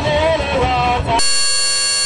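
Live band music with guitar; a little past halfway it cuts out abruptly and a steady electronic buzz holds for about a second, then the music resumes.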